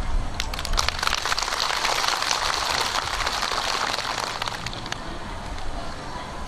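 Audience applauding: a spatter of many hand claps that swells about half a second in and fades out before the end.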